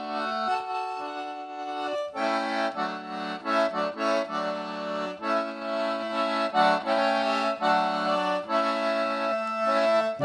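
Concertina playing an instrumental break in a French-Canadian folk song, a melody over held chords with no voice.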